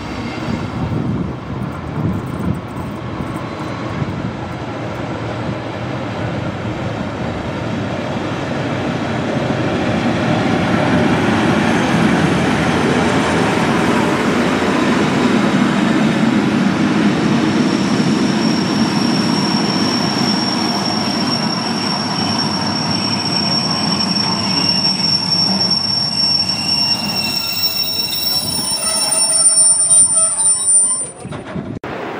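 Rhaetian Railway metre-gauge train, hauled by a Ge 6/6 II electric locomotive, rolling into a station close past. Its running noise swells to a peak about halfway through. Then a steady high-pitched wheel and brake squeal sets in and lasts as the coaches slow to a stop near the end.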